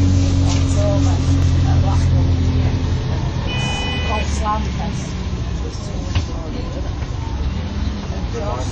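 MAN 18.240 bus's diesel engine running, heard from inside the passenger saloon as a steady low drone whose note drops about three seconds in. A brief electronic tone sounds about halfway through.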